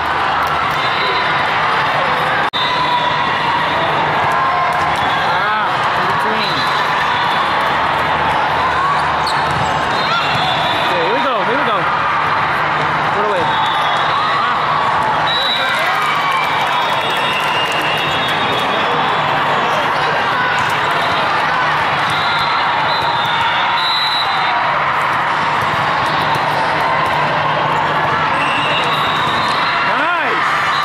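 Indoor volleyball in a busy hall: a steady din of many overlapping voices from players and spectators. Through it come volleyball hits and short, high squeaks of athletic shoes on the court.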